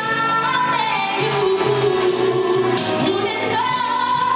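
A woman singing into a handheld microphone over a backing music track. She holds a long, wavering note through the middle and another near the end.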